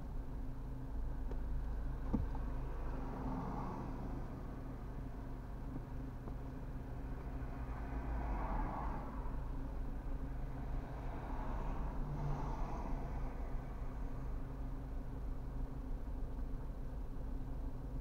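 Steady low hum inside a stationary car's cabin, with cars passing on a wet road outside: their tyre noise swells and fades about three times.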